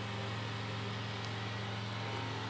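Steady low mechanical hum of outdoor noise coming in through an open window, an even drone with no change in level.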